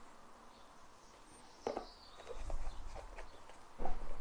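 Hands handling a watch presentation box and lifting a steel-bracelet watch from its cushion. It is quiet for the first second and a half, then comes a sharp click, then a few soft taps and knocks over a low handling rumble, and another knock near the end.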